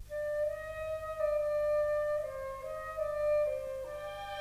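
Solo flute opening a slow traditional tune, playing a few long held notes, with a faint steady low hum from the old recording underneath.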